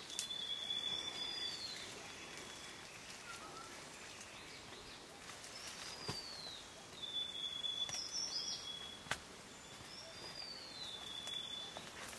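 A forest bird singing the same phrase about three times: a held high whistle with a note sliding downward into it, at the start, around six to eight seconds in and near the end. Between the calls come a few sharp snaps of twigs and branches as someone moves through dense undergrowth, the loudest about nine seconds in.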